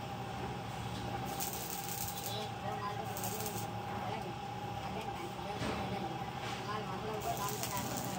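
Electric arc welding on the rim of a sheet-iron pan: the arc crackles and hisses in short bursts, about three of them, over a steady hum.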